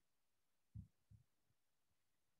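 Near silence: room tone, broken by two short, faint low thumps, the first a little under a second in and the second a third of a second later.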